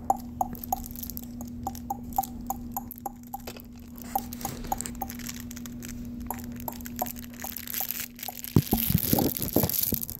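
A simple electronic tune of short plinking notes, about two or three a second, over a steady low hum. It is typical of a baby activity center's music toy. For the last second and a half it is drowned by loud rustling and crinkling close to the microphone, like a fabric crinkle toy being handled.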